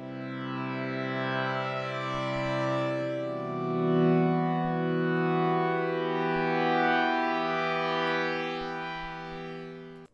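Harmor software synthesizer playing the default AeroPad pad preset: sustained, mellow chords held on a keyboard, changing chord about three seconds in and fading out near the end.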